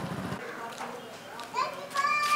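Indistinct voices in a street, children's among them, after a low hum cuts off suddenly near the start.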